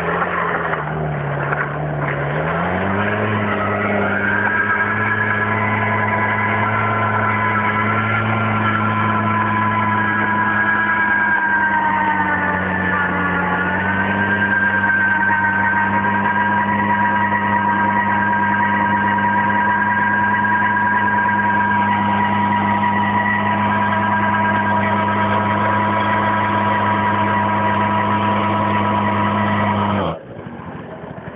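Small scooter engine held at high, steady revs while its rear tyre spins in a burnout, smoking on the pavement. The pitch sags briefly near the start and climbs about three seconds in, dips again a little before halfway and recovers, then holds.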